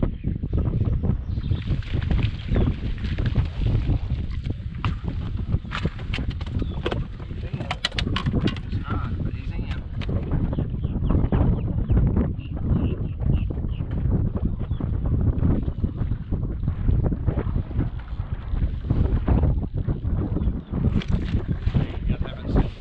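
Wind buffeting the microphone on an open boat, a low rumble that rises and falls with the gusts. A short run of sharp clicks comes about six to ten seconds in.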